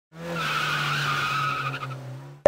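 Cartoon sound effect of a car sliding in with a tyre squeal over a low engine hum, fading out near the end.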